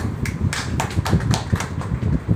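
An irregular run of about half a dozen sharp taps or clicks over a steady low rumble.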